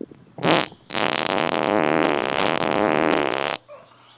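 A short fart about half a second in, then a long, drawn-out fluttering fart of nearly three seconds that stops suddenly.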